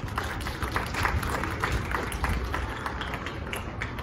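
Audience applauding and clapping, a dense, irregular patter of claps.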